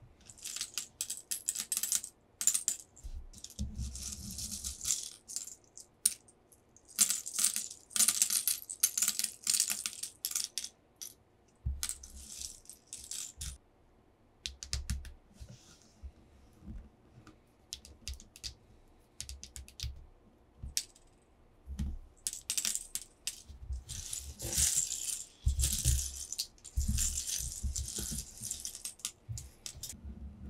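Fingernails and fingertips tapping and scratching on paper over a tabletop, with small hard plastic pieces clicking and rattling together. The sound comes in irregular bursts of crisp clicks with short quiet gaps and soft thuds of the hands on the table.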